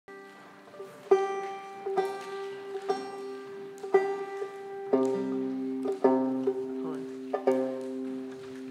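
Banjo being picked: chords struck about once a second and left to ring over a steady high drone note, with a change to a lower, fuller chord about five seconds in.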